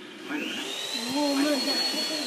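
Vacuum cleaner switched on about a third of a second in: its motor whine rises in pitch as it spins up, then holds steady.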